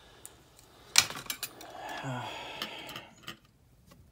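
Small metal hand tools handled on a workbench: one sharp click about a second in, then a few lighter clicks and rattles, and a soft rustle of handling.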